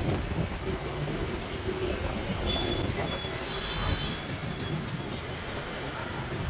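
Metal scraping and brief high squeals, about two and a half to four seconds in, as a new key blank is worked in a scooter's ignition lock with pliers and a flat hand file to cut it to fit. A steady low rumble runs underneath.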